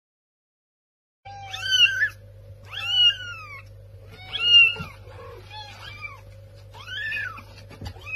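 A kitten meowing repeatedly, about five rising-and-falling cries roughly a second apart, starting about a second in, over a faint steady hum.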